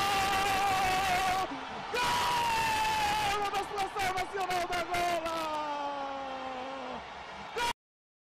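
A football commentator's drawn-out shout of "Gooool!" in Portuguese, held in two long breaths. The first breaks off about a second and a half in; the second slowly falls in pitch. The sound cuts off abruptly near the end.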